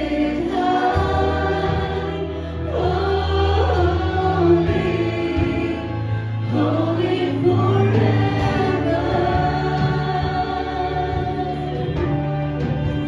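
A live worship band playing a congregational song: several voices singing together into microphones over electric guitar and keyboard, with long held bass notes that change every few seconds.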